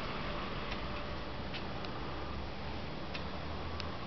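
Press machine running with its heaters just switched on: a steady low hum with light, irregular ticks, about five in four seconds.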